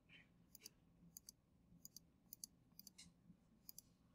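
Faint clicks of a computer mouse, about a dozen, many in close pairs, at uneven intervals over near silence.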